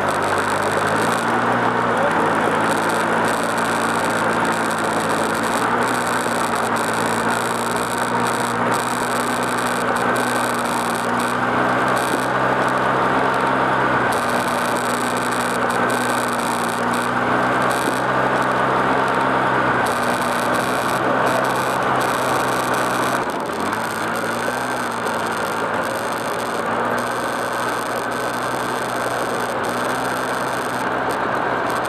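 ATV engine running at a steady speed under a continuous rushing noise, heard from the machine itself. About two-thirds of the way through the engine note drops briefly and then climbs back up.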